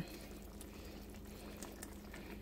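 Faint bubbling of jambalaya simmering in the pot, with a wooden spoon stirring through the rice and vegetables.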